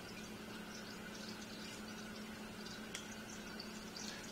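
Faint handling of fishing line and a small metal swivel as a clinch knot is pulled tight: light scattered ticks and one sharper click about three seconds in, over a steady low hum.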